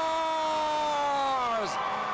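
A play-by-play announcer's long drawn-out "score!" goal call, one held note sinking slightly in pitch and breaking off about a second and a half in. Crowd cheering follows near the end.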